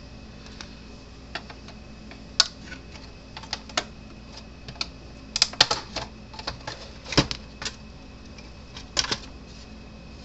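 Irregular clicks and light knocks of a Gallagher MBX2500 fence charger's plastic case and circuit boards being handled and pulled apart, with a quick cluster of clicks about halfway through.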